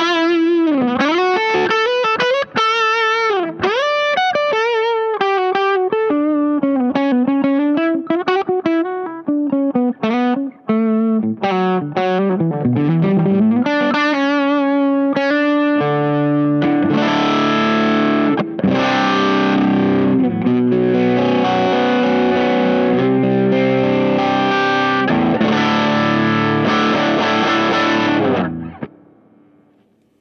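Electric guitar with P90 pickups, a Fano Omnis MG6, played through a Caline Enchanted Tone overdrive pedal. It opens with single-note lead lines with bends and vibrato, then from about halfway plays sustained distorted chords, which ring out and fade near the end.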